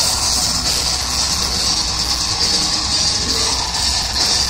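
A gothic metal band playing live: a loud, steady wall of band music, heard from the audience.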